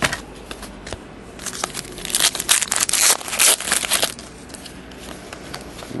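Trading cards being shuffled through by hand. A click at the start, then from about a second and a half in, some two and a half seconds of dense crackling and rustling as the cards slide against each other.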